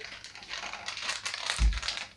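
Clear plastic bag crinkling as it is handled and turned over, with a short low thump about one and a half seconds in.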